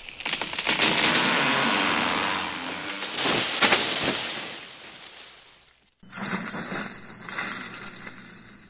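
Intro sound effects: a rushing swell of noise with sharp cracks a little past the middle that fades away, then glass shattering and tinkling for the last two seconds.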